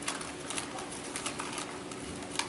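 Light, irregular clicking from a laptop being worked, a few clicks a second.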